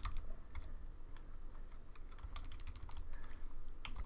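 Computer keyboard being typed on: irregular keystroke clicks, a few a second, as a line of code is typed out.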